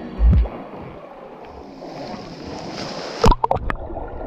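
Water sloshing and splashing against a waterproof action camera at the surface of a cave spring. A heavy low thump comes about a quarter second in, and a quick cluster of sharp splashes or knocks comes near the end as the camera dips underwater.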